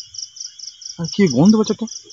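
Night crickets chirping in a steady high pulse, about five chirps a second, over a second, steady high insect trill. A man's voice breaks in briefly about a second in.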